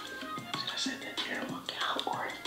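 Background music playing under quiet, low-level speech.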